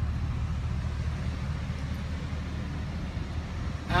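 Steady low rumble of motor-vehicle noise, with no distinct events.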